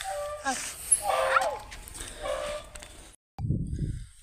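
A young pet monkey giving three short, high-pitched calls about a second apart, one of them sliding quickly up and down in pitch. Near the end comes a brief low rumble.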